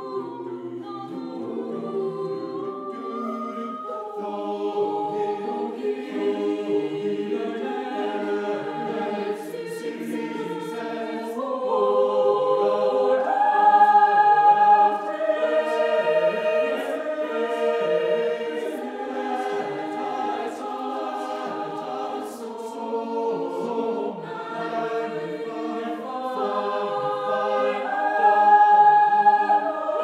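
Mixed-voice madrigal choir singing a cappella in close harmony, holding chords that change every second or so. The singing swells louder about halfway through and again near the end.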